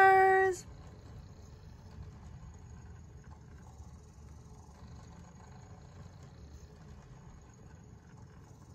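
A high-pitched voice holds one long note that ends about half a second in. After that there is only faint room tone, a low steady hum with a faint high whine, while the television stays muted.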